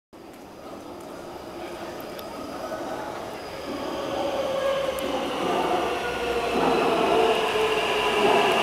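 Taipei Metro C371-series train approaching the platform through the tunnel. Its running noise and several steady whining tones grow steadily louder as it nears.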